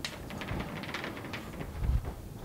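Chalk scratching and tapping on a blackboard as a heading is written, a run of short, light scrapes and clicks.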